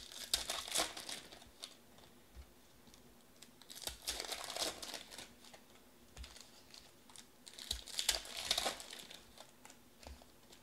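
Foil wrappers of Panini Elite Extra Edition trading card packs crinkling and tearing as they are ripped open and handled. The crinkling comes in three bursts a few seconds apart.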